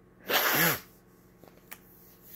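A woman sneezing once, a sharp half-second sneeze that ends in a falling voiced tail.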